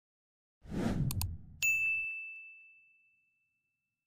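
Subscribe-reminder sound effect: a short whoosh with two quick clicks, then a single bright bell ding that rings out and fades over about two seconds.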